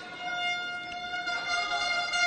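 A steady, held pitched tone with overtones, unchanging in pitch, over faint hall ambience.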